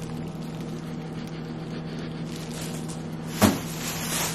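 A steady low hum, with one short, sharp sniff about three and a half seconds in as someone smells freezer-stored knee sleeves.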